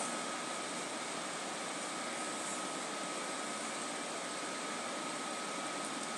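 Steady background hiss with a faint continuous high tone running through it, unchanging and with no distinct events.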